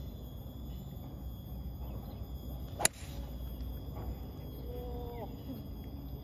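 A golf driver striking a teed-up ball: one sharp crack about three seconds in. Insects hum steadily throughout.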